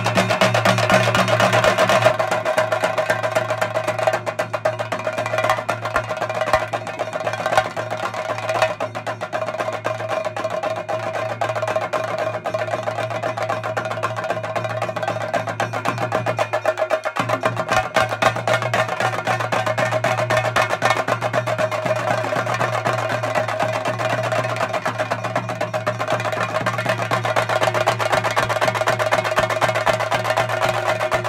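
Chenda drum ensemble playing a fast, continuous roll of stick strokes, with steady held tones underneath.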